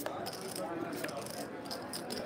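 Clay poker chips clicking and clattering in many quick light clicks, over faint background chatter.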